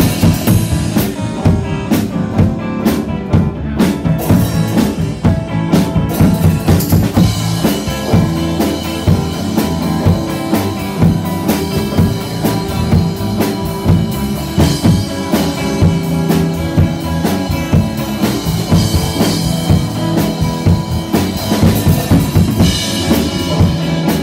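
Live rock band playing, the drum kit's bass drum and snare keeping a steady beat under the bass and other instruments.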